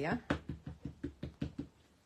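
Ink pad tapped repeatedly onto a stamp to ink it, a run of light knocks about five a second that stops about a second and a half in.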